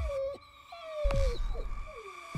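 Horror-trailer sound design: deep booming hits that drop in pitch, about a second apart, between drawn-out, slightly falling moaning tones over a steady high drone.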